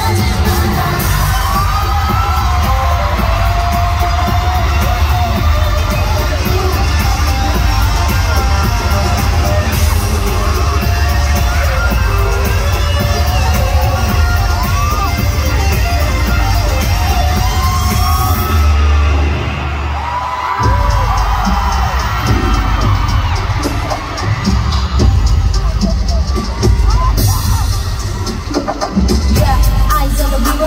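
Electric guitar solo with bent, gliding notes over a pop backing track, heard loud through an arena sound system, with fans yelling and whooping. About two-thirds of the way in, the top end drops away and the music shifts to a different section.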